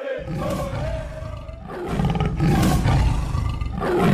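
Big-cat growl and roar sound effect over a deep rumble, with a few sharp hits; it swells to its loudest near the end.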